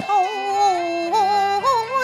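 A woman singing a Cantonese opera melisma: one long held vowel with vibrato that sinks slowly, then climbs in two steps near the end, over a steady instrumental accompaniment.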